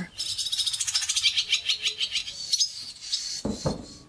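Small songbird singing a rapid chirping trill, many short high notes a second. There is a brief dull thump near the end.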